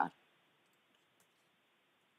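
Near silence: the faint steady hiss of a recording's background, with a few very faint high clicks.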